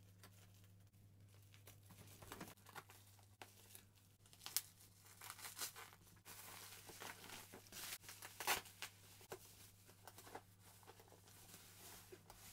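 Faint crinkling and tearing of black plastic wrapping and bubble wrap as a parcel is cut open with scissors and pulled apart, in irregular rustles that are busiest in the middle. A low steady hum runs underneath.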